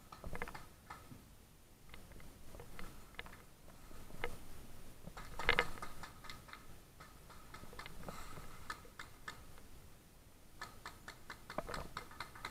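Faint, scattered sharp clicks and knocks, with one louder knock about halfway through and a quick run of clicks near the end.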